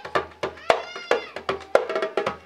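Music led by djembe hand-drum strikes, several a second, with a high pitched tone that rises and falls once about a second in.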